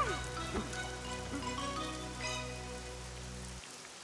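Steady rain falling, as a soundtrack effect, under soft background music of sustained notes that fades; the music's low notes stop shortly before the end.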